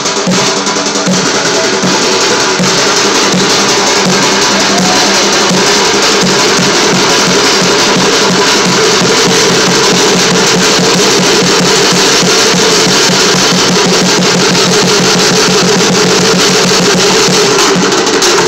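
Bucket drumming: upturned five-gallon plastic buckets struck with drumsticks in a fast, unbroken rhythm.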